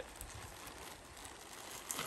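Faint rustling of a black plastic trash bag as it is twisted shut around packed clothing, with a brief crinkle just after the start and another near the end.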